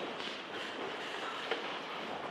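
Steady background noise of a hall with people moving about, and a light knock about one and a half seconds in.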